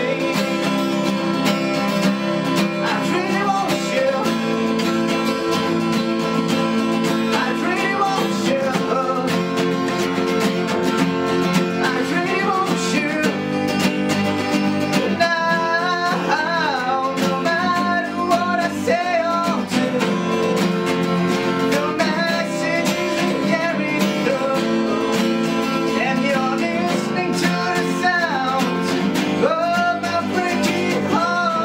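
Two acoustic guitars strummed and picked together in a steady accompaniment, with a man's voice singing a melody over them.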